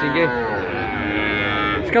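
A cow mooing: one long, drawn-out call that falls slightly in pitch and then holds steady, over the hubbub of a crowded livestock market.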